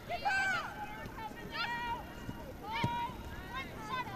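Women footballers shouting short, high-pitched calls to each other on the pitch, three calls in quick succession, with a single sharp knock about three seconds in.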